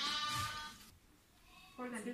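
A sheep bleating once, a single call of just under a second.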